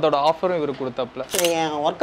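A man speaking, with one short, sharp click-like burst about a second and a half in.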